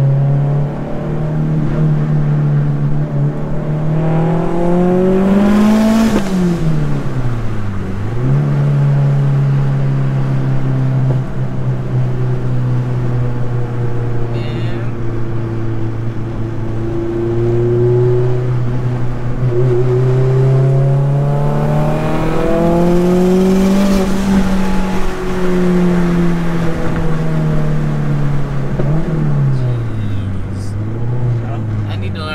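Mazdaspeed 3's turbocharged 2.3-litre four-cylinder heard from inside the cabin while driving. The revs climb over the first six seconds, then drop steeply in a gear change and settle to a steady pull. They climb again in the second half and fall away near the end.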